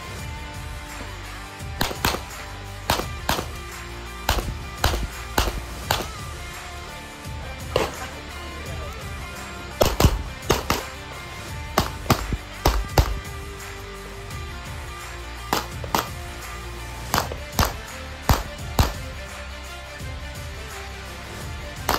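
Single-stack 9mm pistol shots, about two dozen, fired mostly in quick pairs with short pauses between strings, over background music.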